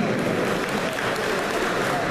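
Audience applauding with steady, dense clapping.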